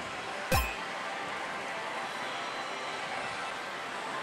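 Pachislot hall din: a steady wash of noise from rows of running slot machines, with one brief thump about half a second in.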